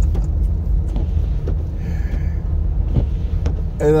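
Steady low rumble of a car driving on a snow-covered road, heard from inside the cabin: engine and tyre noise.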